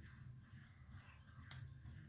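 Near silence: low room hum, with one faint click about one and a half seconds in.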